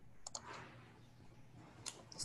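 Near silence with a few faint, short clicks: a pair about a third of a second in and one more near the end.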